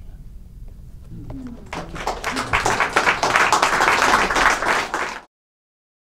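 Audience applause that starts about two seconds in, then cuts off suddenly to silence near the end.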